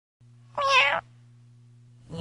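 A single short meow, about half a second long, over a low steady hum.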